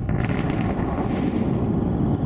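Loud, steady earthquake-style rumble sound effect that starts abruptly, serving as the stinger for a seismic report segment.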